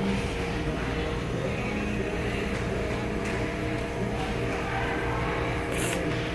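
Steady background noise of a large indoor building: a continuous low hum with a faint mix of distant sounds.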